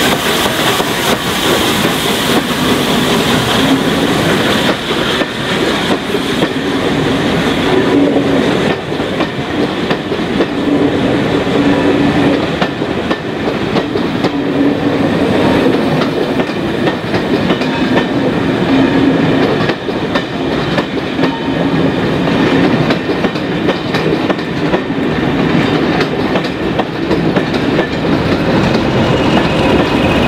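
A passenger train of MK1 and MK2 coaches rolling slowly past, its wheels clicking steadily over the rail joints. A steam hiss from the departing A2 pacific locomotive is heard in the first few seconds, and near the end a steady diesel engine whine comes in as the Class 20 locomotive on the rear draws level.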